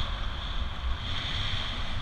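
Wind buffeting a bike-mounted camera's microphone as a road bicycle rides at speed, a low, uneven rumble under a steady high-pitched hiss.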